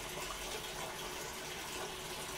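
Washing machine taking in water: a steady rush of running water filling the drum.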